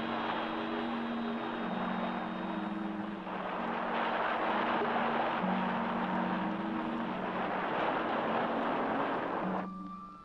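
Film soundtrack: the steady rushing noise of a science-fiction hover car in motion, under low held notes of the score that step from one pitch to the next. Both cut off abruptly just before the end.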